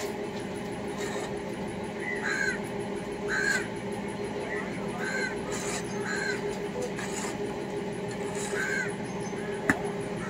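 Crows cawing repeatedly, short harsh calls coming in loose bouts, over a steady low machine hum. A single sharp knock comes near the end.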